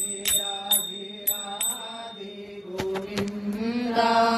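Devotional chant music: a steady drone under repeated ringing metallic strikes. A held sung note swells in near the end.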